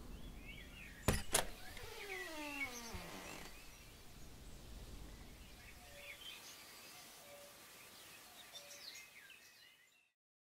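Two sharp knocks on a door about a second in, then a creak that falls steadily in pitch for about a second and a half, over quiet outdoor background with birds chirping.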